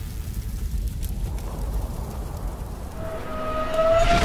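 Logo-reveal sound effect: a low rumble with a crackling texture, steadily building in loudness, with a rising tone entering about three seconds in and swelling to the end.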